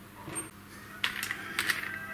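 Light handling clicks of a small metal hex key against the spindle's cable connector and conduit, several small taps in the second half.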